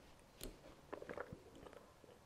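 Faint mouth sounds from someone who has just downed a shot of vodka: a few short wet clicks and smacks, one about half a second in and a quick cluster around a second in.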